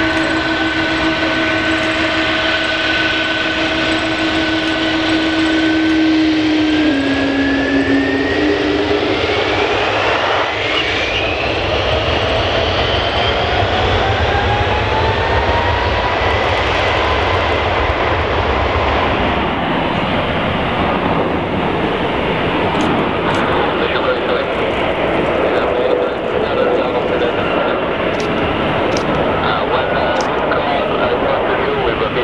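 Twin jet engines of a United Boeing 777 spooling up on the takeoff roll: a steady whine that rises in pitch over several seconds from about seven seconds in, with a deep rumble building underneath, then settling at takeoff power.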